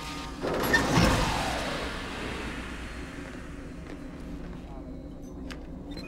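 Sci-fi explosion sound effect. A rushing blast swells about half a second in, peaks with a deep boom around a second in, then dies away over the next couple of seconds. Faint background score runs underneath.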